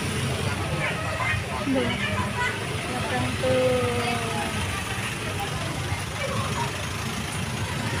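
Engines of small pickup trucks and motorbikes running at low speed as they pass close by, a steady low rumble, with scattered voices of people and children over it.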